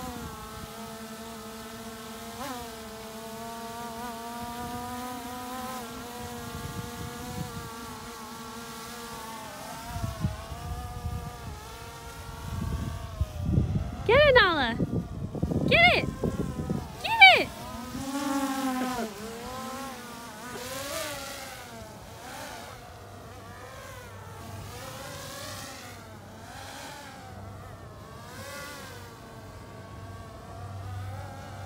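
Skydio 2 quadcopter drone hovering, its propellers humming steadily with the pitch wavering as it holds and shifts against the weight of a toy hanging beneath it, growing fainter in the second half. About halfway through, three short, loud sweeping calls rise and fall over the hum.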